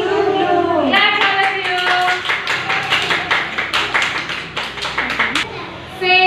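A small group clapping hands, a quick run of claps that starts about a second in and stops shortly before the end, with voices at the start.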